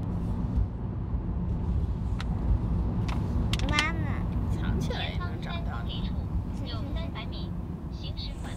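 Passenger car cabin noise while driving: a steady low rumble of road and engine noise.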